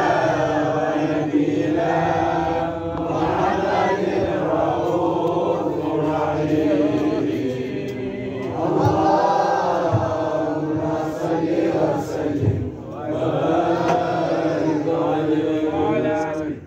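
Group of men's voices chanting together, long drawn-out melodic lines held without a break: Arabic devotional mawlid chanting.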